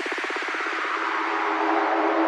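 Electronic background music at a transition: a fast stuttering note thins out into a held note under a sweeping whoosh, the build-up before the next section.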